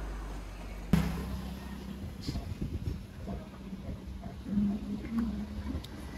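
Steady low hum of a running vehicle engine, starting abruptly about a second in. A brief hummed voice sound comes about four and a half seconds in.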